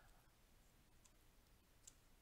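Near silence, with two faint computer keyboard key clicks, one about a second in and one near the end, as a formula is typed.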